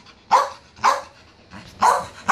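A dog barking three times, short sharp barks less than a second apart.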